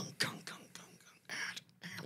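A man imitating a heavy metal breakdown with his mouth, under his breath: a few short, breathy, percussive vocal sounds rather than words.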